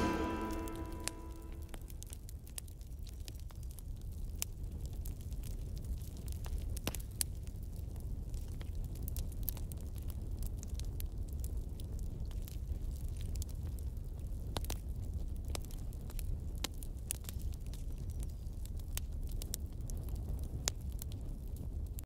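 The last notes of the music fade out in the first second or so. Then a low, steady rumble with irregular sharp crackles runs on.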